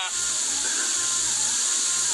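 A steady high hiss of background noise at an even level, with no speech.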